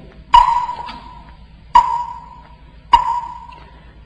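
A small metal bell used in Buddhist chanting, struck three times between chanted verses about a second and a half apart. Each stroke leaves one clear ringing tone that fades within about a second.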